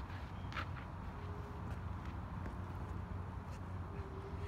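Light footsteps and a few faint clicks over a steady low background rumble.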